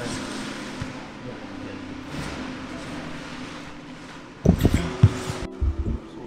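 Two grapplers moving on a foam gym mat: soft scuffling of bodies and clothing over a steady low hum. About four and a half seconds in there is a quick cluster of loud thumps, bodies landing on the mat as the sweep finishes.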